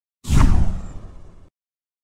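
Whoosh-and-boom transition sound effect: a sudden swoosh over a deep low boom, starting about a quarter second in. The swoosh falls in pitch as it fades, and the sound cuts off at about a second and a half.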